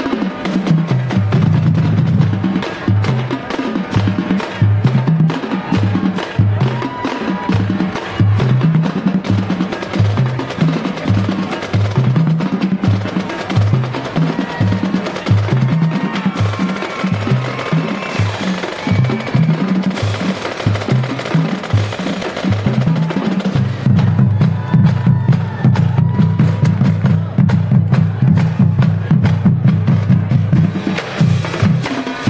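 A marching band drumline playing a cadence: sharp stick and rim clicks from the snares over tuned bass drums stepping through a run of pitches. The bass drum part fills in thicker from about three-quarters of the way in.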